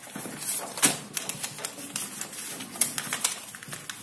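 Paper being folded and creased by hand into a paper plane: a run of crinkles, rustles and small clicks, with a sharper crackle about a second in.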